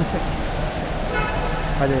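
Steady background din with a short horn toot, one held tone, a little past halfway; a man calls out near the end.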